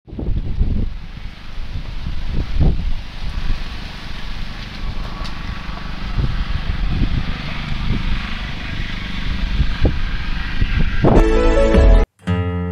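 Wind buffeting the microphone: a loud, steady rush with uneven low rumbling and a few thuds. About a second before the end, music with pitched notes comes in.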